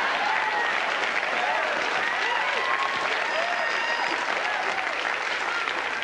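Studio audience applauding and cheering, with whoops and shouts over the clapping, at a steady level.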